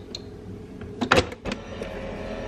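Nespresso Vertuo coffee machine: a few sharp clicks as it is closed and set going, then its motor starts up with a steady whir as the brew begins.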